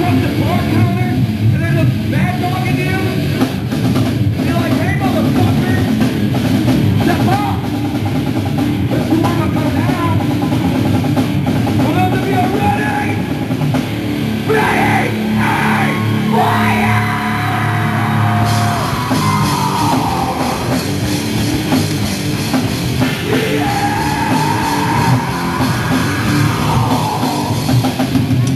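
Live heavy metal band playing: distorted electric guitars over a pounding drum kit.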